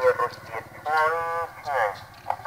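A high-pitched human voice in drawn-out, wavering syllables, one held for about half a second near the middle.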